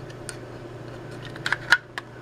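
A few light plastic clicks and taps as the two halves of a power meter's plastic housing are handled and fitted back together, the loudest click a little before the end, over a low steady hum.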